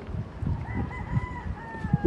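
A rooster crowing once: one long held call that begins about two thirds of a second in and trails off slightly in pitch. Dull low thumps of footsteps on the bridge's wooden sleepers run underneath.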